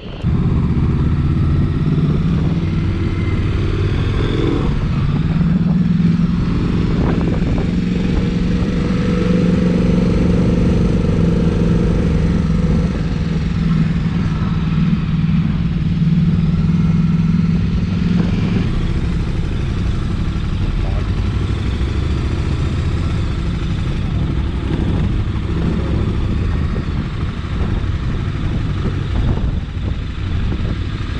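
Motorcycle engine running at a steady pitch under way, with wind and road noise throughout. The engine note eases off about two-thirds of the way through as the bike slows.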